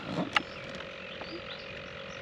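Quiet outdoor ambience with short, high chirps repeating throughout. A sharp click comes about a third of a second in, with a few fainter ticks after it, and a faint steady hum starts soon after the click.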